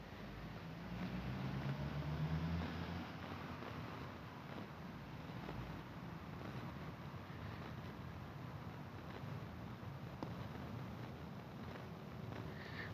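Distant airplane engine drone: a low hum that swells over the first three seconds, then settles to a steady faint rumble.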